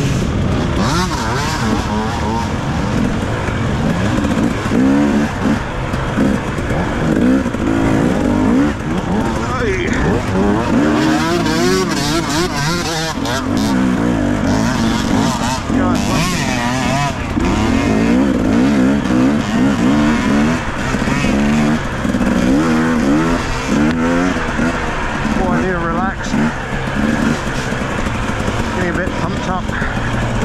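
2017 KTM 250 EXC two-stroke dirt bike engine being ridden hard, its pitch rising and falling continually as the throttle is opened and closed.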